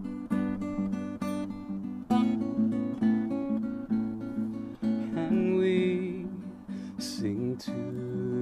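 Acoustic guitar played in a steady picked and strummed pattern, getting louder about two seconds in, with a higher wavering tone joining in the second half.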